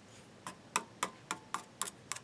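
A quick run of light, sharp clicks, about four a second and slightly uneven, starting about half a second in.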